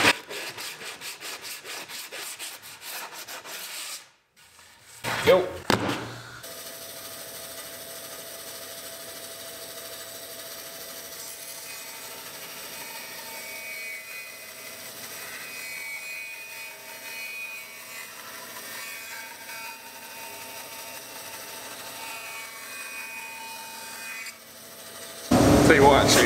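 A hand sanding block rubs in quick strokes, about five a second, along the edge of a laminated poplar board to take off hardened glue squeeze-out. About five seconds in there is a brief louder sound. From about six seconds a bandsaw runs steadily as the curved lamination is fed through it and ripped down.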